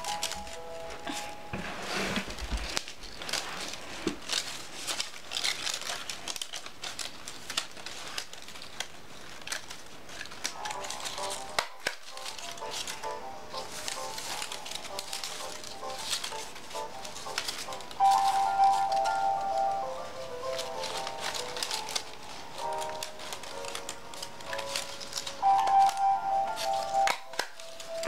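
Paper strips of a stapled 3-D paper snowflake rustling and crinkling in quick, irregular ticks as hands pull and shape them. A simple melody plays in the background from about ten seconds in and is loudest at moments in the second half.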